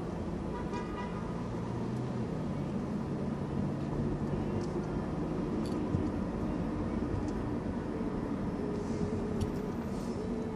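Steady engine and road hum of a car driving through city traffic, heard from inside the cabin.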